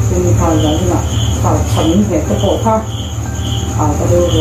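Crickets chirping: a continuous high trill with a lower chirp repeating about twice a second, over a low steady hum, with a person speaking over it.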